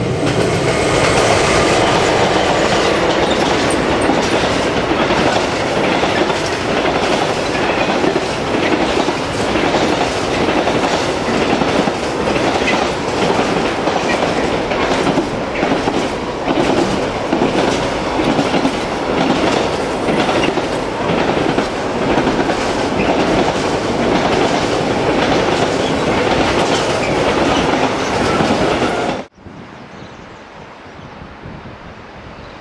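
Long electric-hauled container freight train rolling past close by: a loud, steady rumble of wheels on rail with a rapid, continuous clickety-clack of wheels over rail joints. A faint steady hum from the locomotives is heard for the first few seconds, and the sound cuts off suddenly shortly before the end.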